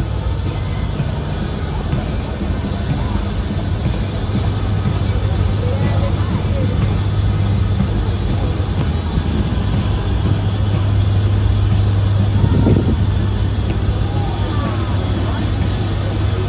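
Steady low drone of a large warship's engines and machinery as the Talwar-class frigate passes close by, with faint voices over it.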